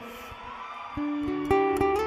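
Acoustic guitar starting a song intro, a few single plucked notes beginning about a second in.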